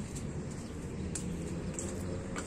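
Outdoor background noise with a bird calling faintly and a couple of light clicks.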